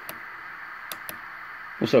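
Low steady hiss of band noise from the BITX40 transceiver's speaker while it receives on 40 m SSB, with a few light clicks about a second in.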